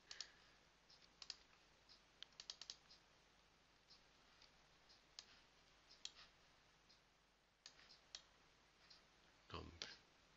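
Faint computer mouse clicks, scattered singly and in a quick run of several about two and a half seconds in, over near-silent room tone.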